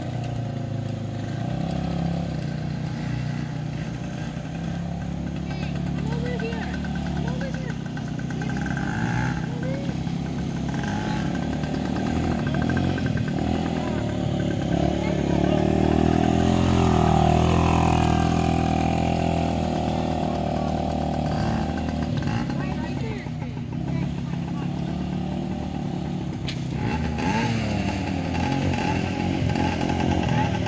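Small youth Kawasaki ATV engine running as it is ridden, its pitch rising and falling with the throttle, loudest about halfway through as it comes close.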